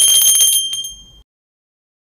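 A small bell rings out with several high, steady tones. It fades through the first second, then cuts off to silence. This is the notification-bell cue that goes with the reminder to turn on the subscribe bell.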